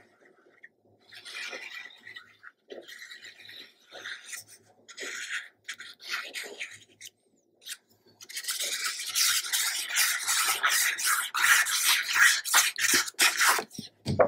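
A fine-tip glue bottle squeezed and drawn along the edges of a paper panel, making short scratchy strokes, then a longer, louder stretch of continuous scratchy rubbing from about eight seconds in.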